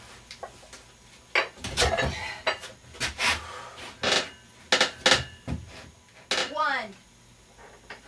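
Hard, forceful breathing in short bursts about once or twice a second during dumbbell pullovers with a heavy plate-loaded dumbbell, with a brief voiced grunt near the end. The dumbbell's iron plates give a few light metallic clinks.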